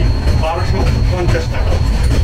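Passenger express train running at speed, heard from outside the coach window: a steady heavy low rumble of the wheels on the track. Voices are heard over it about halfway through.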